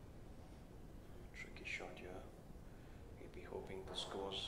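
Faint voices in low room tone: brief soft speech about a second and a half in and again near the end.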